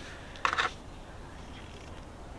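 A brief plastic clicking sound about half a second in, a sunscreen tube's cap being opened, over a faint steady low rumble.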